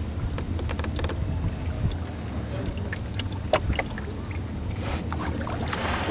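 Wooden canoe being poled along through calm water: a steady low rumble with scattered small knocks and splashes.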